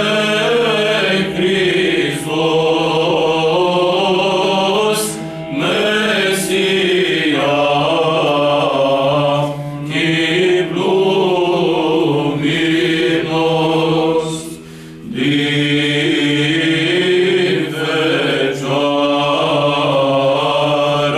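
Small male choir of theology students singing a Romanian Christmas carol (colind) unaccompanied, in several voices, with a low note held steady under the melody. The singing drops off briefly about fifteen seconds in, then resumes.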